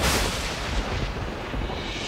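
A dramatic soundtrack sound effect: a deep boom that hit just before, fading away in a long rumbling tail.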